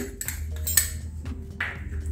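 A metal spoon clinking and scraping against a small ceramic bowl and a stainless-steel mixer-grinder jar as spice is tipped in, a few separate short clinks.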